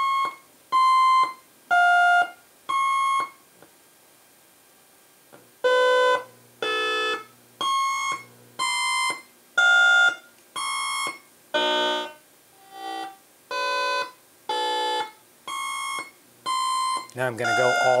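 A eurorack synthesizer sequence run through a Zlob Modular Foldiplier wave folder: short, bright, overtone-rich notes at changing higher pitches, about one a second. It pauses for about two seconds after the first few notes.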